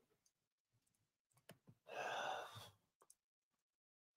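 A man sighing: one breathy exhale of about a second near the middle of a near-silent stretch, with a few faint clicks around it.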